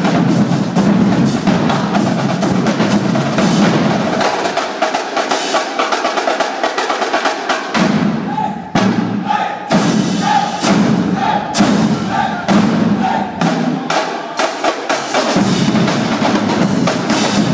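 Marching drumline playing a loud percussion cadence: snare drums, tenor drums, bass drums and crash cymbals struck in fast, dense rhythms. Around the middle the deep bass drums drop out for a few seconds, then sharp accented hits come back about twice a second.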